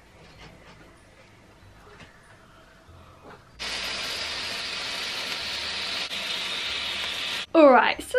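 Cake fountain sparkler burning with a steady, even hiss, starting about three and a half seconds in and cutting off suddenly near the end.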